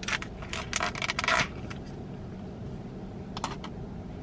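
Ice cubes clattering in a plastic iced-coffee cup as it is handled: a quick run of sharp clinks in the first second and a half, then two more clicks about three and a half seconds in.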